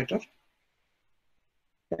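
A pause in a man's speech: his word trails off just after the start, then near silence for about a second and a half before he speaks again near the end.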